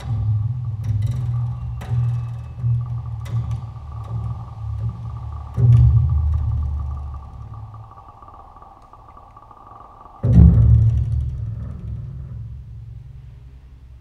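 Solo double bass played plucked in a contemporary piece: deep low notes with sharp percussive attacks under a thin, high held tone that stops about ten seconds in. Two heavy low notes ring out and die away, one near the middle and one about ten seconds in.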